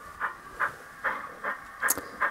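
Model steam locomotive's sound decoder playing the exhaust chuff through its small onboard speaker as the engine starts to move off at low speed, about two puffs a second.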